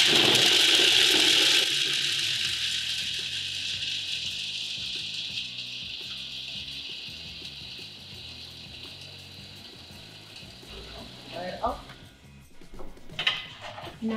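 Electric food processor starting suddenly and running, chopping a stiff mixture of dates and nuts, with rock music laid over it; the whole sound fades down gradually.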